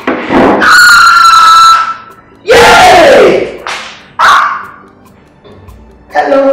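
A high-pitched voice: one long held note lasting about a second, then a shorter cry that falls in pitch, and a brief third cry; quieter after that.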